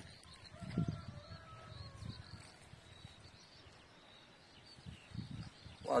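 Quiet rural outdoor ambience with a few short low rumbles and faint bird calls.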